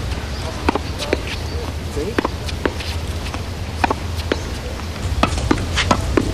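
A tennis ball struck repeatedly with a racket against a practice wall in a steady solo rally: a series of sharp pops, often in pairs a fraction of a second apart, about a dozen in all, over a low steady hum.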